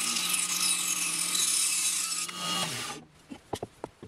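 A bandsaw cutting through a thick oak block: a steady, loud rasp of the blade in the wood over the machine's hum. The cut stops about three seconds in, followed by a few light knocks as the block is handled.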